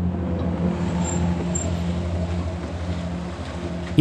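A car engine runs at a steady low drone under a hiss of road noise, easing off slightly near the end.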